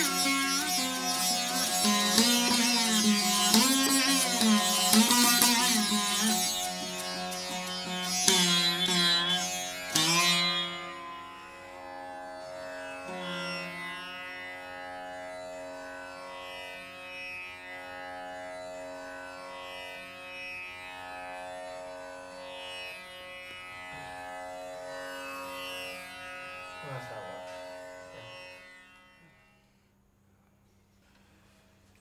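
Rudra veena played solo: slow notes that bend and glide in pitch for the first ten seconds, ending in a firm pluck. The playing then drops to softer plucked strokes ringing over the sustained strings, and fades out shortly before the end.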